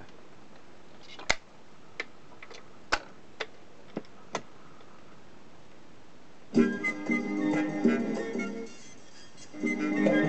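Telux record player's autochanger cycling, with about six sharp mechanical clicks over the first four and a half seconds. Then the record starts playing music about six and a half seconds in, dipping briefly near the end before carrying on louder.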